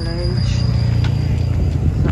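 A steady, high-pitched insect trill, cricket-like, over a loud low rumble.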